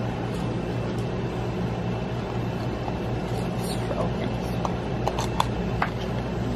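Small cardboard box being handled and opened, giving a few light clicks and rustles in the second half, over a steady low hum.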